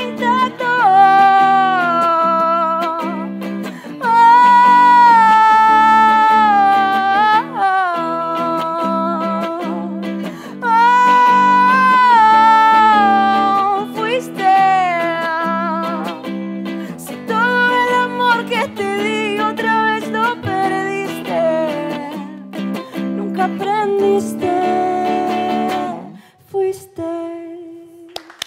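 A woman singing long, sliding held notes over chords on an electric guitar, played live. Near the end the voice stops and the last guitar note rings out.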